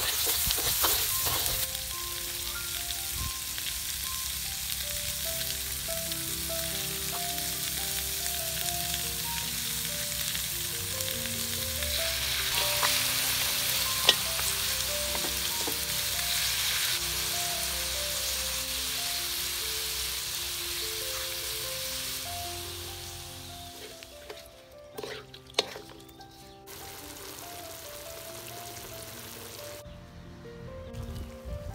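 Hot oil sizzling in a steel wok as chillies, garlic and pork ribs stir-fry, with a wooden spatula stirring and one sharp knock about halfway. The sizzle fades out about three-quarters of the way through. Gentle background music plays throughout.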